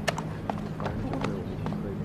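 Irregular sharp clicks of hard-soled footsteps on a deck, over faint background chatter and a steady low hum.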